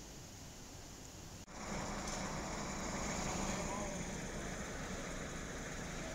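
Outdoor roadside ambience: a steady background of traffic with the voices of people talking. It gets louder after an abrupt cut about a second and a half in, following a quieter steady hiss.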